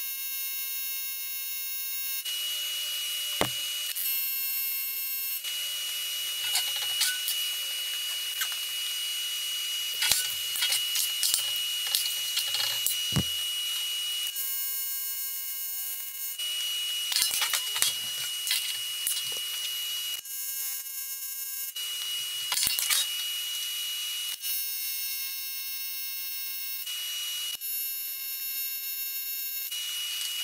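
AC TIG welding arc on aluminium buzzing at full pedal, the AC frequency set down to 60 Hz with a balled tungsten on dirty aluminium. The buzz steps up and down in level every few seconds as the arc is worked, with a few sharp clicks.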